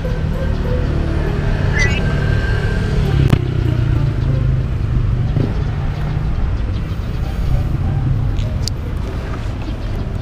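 Motor vehicle engine idling steadily, a low hum, with a brief click a little over three seconds in.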